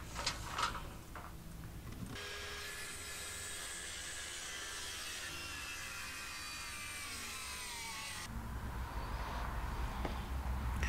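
Circular saw running and cutting through a cedar board for about six seconds, starting and stopping abruptly, with a high whine that sinks slightly in pitch as it goes. A few light clicks come before it in the first second.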